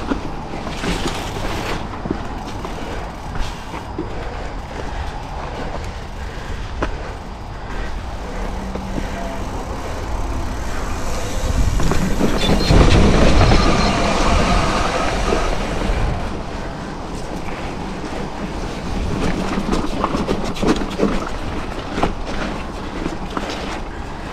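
Mountain bike rolling fast down a dirt and rock trail: the bike rattles over the bumps, with tyre and rushing-air noise. It gets louder for several seconds midway, over a rocky descent.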